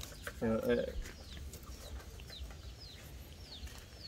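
Chickens calling: a string of short, high, falling chirps, with a brief lower call about half a second in.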